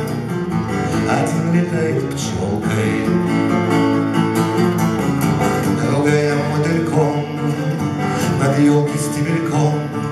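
Steel-string acoustic guitar strummed, with a man singing over it: live song performance.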